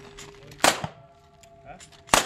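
One revolver shot about two-thirds of a second in, followed by a steel plate target ringing as it fades.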